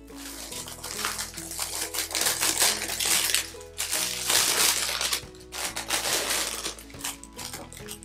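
Clear plastic packaging crinkling and rustling in repeated bursts as it is opened and its contents pulled out, over background music.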